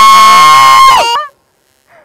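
A woman's long, loud scream, held at one high, steady pitch and breaking off about a second in.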